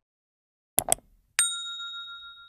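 Subscribe-button animation sound effect: a quick double mouse click, then a bright notification-bell ding that rings on and fades.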